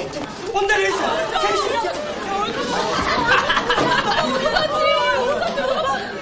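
Several people talking over one another: a steady hubbub of overlapping voices, like students chattering in a classroom.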